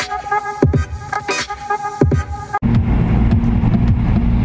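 Electronic beat-driven music with deep kick drums plays over a car's stock radio from a Bluetooth FM transmitter. About two and a half seconds in it cuts off suddenly, and a steady low rumble of the car running is left.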